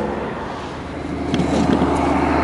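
A steady low mechanical hum, with a few faint clicks about a second and a half in.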